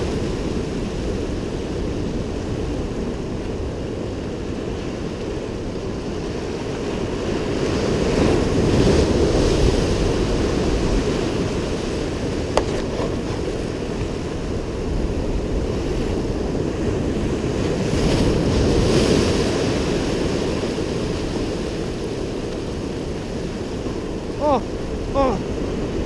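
Surf breaking and washing over the rocks of a gully, a continuous rushing that swells twice as bigger waves come through, with wind buffeting the microphone. A single sharp click comes about halfway through.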